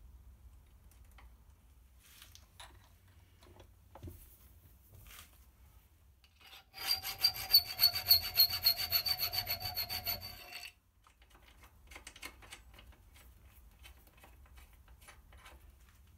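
A flat metal bracket strip clamped in a bench vise, worked by hand: a run of quick rasping metal-on-metal strokes with a ringing tone, lasting about four seconds from about seven seconds in. Light handling clicks come before and after.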